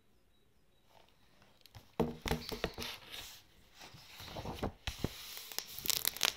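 Hardcover picture book being handled and lowered: rustling pages and light knocks and taps, starting about two seconds in after near silence.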